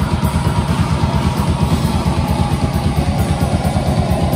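Heavy metal band playing live: distorted electric guitars, bass and a drum kit in a loud instrumental passage without vocals, driven by a fast, steady drum pulse.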